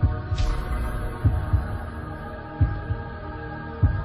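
Logo-intro sound design: a sustained synth drone with a deep bass pulse beating in paired thumps like a heartbeat, about once every second and a half. A short swoosh with a high sparkle comes about half a second in.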